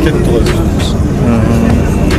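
Men's voices talking briefly in a crowd, over a steady low rumble.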